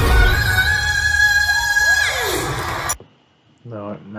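Live pop performance playing back: a female singer holds one long high note over the band, then the music cuts off suddenly about three seconds in. A man's voice starts speaking near the end.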